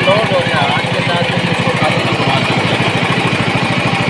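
Small gas-fuelled generator engine running steadily with a rapid, even beat, driving a soft-serve ice cream machine by belt.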